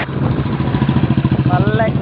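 Auto-rickshaw engine idling with a steady low hum, coming in suddenly at the start.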